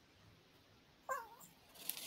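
One brief high-pitched call that falls in pitch, about a second in, amid otherwise quiet room tone.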